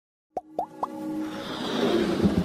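Logo-intro sound effects: three quick plops, each sliding up in pitch, about a quarter second apart, then a musical swell that builds up.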